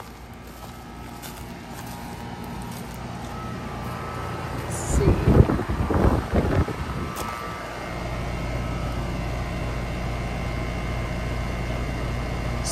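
Ruud outdoor air-conditioning condenser running: a steady low hum that grows louder as the camera comes up to it, then holds level. A few seconds of rough rustling noise come about five seconds in.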